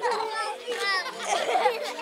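A group of children chattering and calling out together in high voices.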